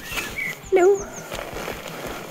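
Small birds chirping a few quick, very high notes, with a short, loud vocal call of bending pitch about a second in.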